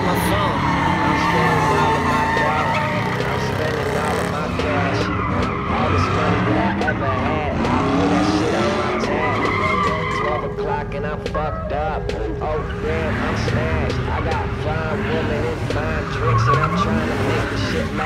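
Pickup truck doing burnout donuts: its engine revs up and down over and over while the rear tyres spin and screech on the asphalt. Crowd voices sit underneath.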